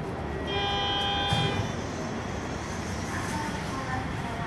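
A single steady electronic signal tone, about a second long, with a short knock near its end, over the steady hum of the train car.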